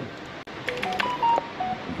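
Computer keyboard and mouse clicking in a quick run of clicks from about half a second in, overlapped by a few short electronic beeps that step between different pitches.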